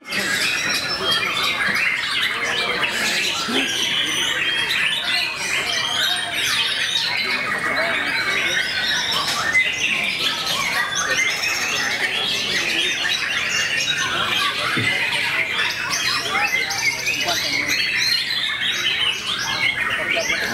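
Caged white-rumped shamas (murai batu) singing: a loud, dense, unbroken mix of overlapping whistles, trills and chattering calls, with human voices mixed in.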